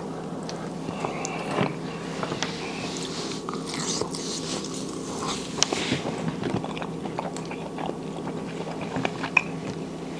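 Close-miked chewing of a bite of seafood, with wet mouth sounds and scattered small clicks and crackles as fingers pick meat from crab and lobster shells.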